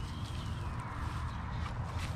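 Dry straw rustling and crackling as hands pull and work it loose from the side of a straw bale, over a steady low rumble.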